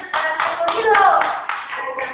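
Audience clapping, with voices calling out over it.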